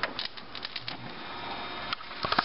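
Function lever of an RCA SelectaVision SFT100W CED videodisc player being worked by hand, giving a quick run of mechanical clicks and clunks in the first second over a steady hiss.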